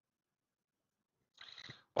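Silence for most of the time, then about half a second of a raspy in-breath near the end, just before speech resumes.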